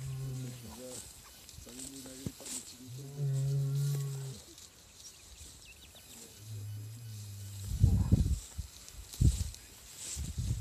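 A young Holstein–Gyr crossbred bull lowing with low, drawn-out moos: a short one at the start, a longer and louder one about three seconds in, and another about six and a half seconds in. Two short, loud, rough bursts of noise follow, near eight and nine seconds.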